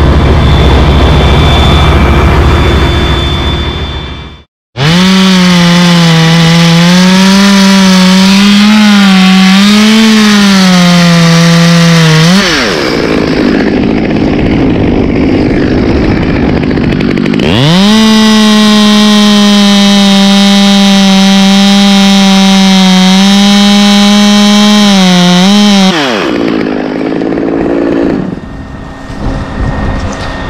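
A chainsaw running at full throttle through two cuts of about eight seconds each, its pitch wavering and dipping under load, with lower running between them. Before the first cut, a low engine rumble stops suddenly.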